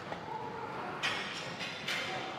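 A man's hard, forced breaths while straining through a heavy set: two short bursts, about a second in and near the end, over steady gym room noise.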